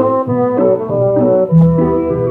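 Small studio orchestra playing an instrumental passage of a Soviet popular song from a 1951 78 rpm shellac record: a melody of held notes moving step by step over a bass line. The sound is narrow and lacks treble, as old disc recordings do.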